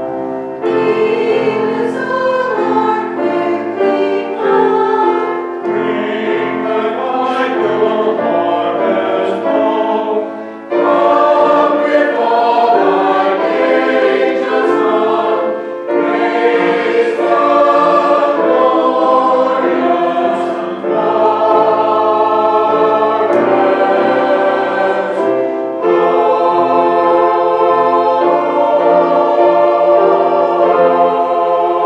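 Mixed church choir of men's and women's voices singing an anthem, in sustained phrases separated by short breaks for breath.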